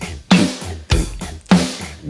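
Drum backing groove: kick and snare alternating on a steady beat a little under two hits a second, with hi-hats ticking off eighth notes mixed louder than usual.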